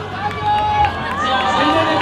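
Several people talking at once close to the microphone, with crowd noise behind.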